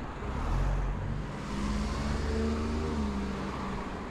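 A minivan driving past close by on the street: engine hum and tyre noise, loudest about half a second in, then the engine note falls slightly as it moves off.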